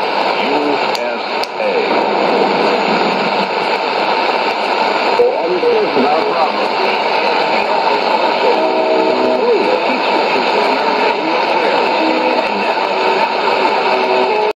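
Shortwave AM broadcast on 9475 kHz coming through a Sony ICF-2001D receiver's speaker: a steady loud hiss of static with a weak voice underneath it. There are a few brief held tones near nine seconds in.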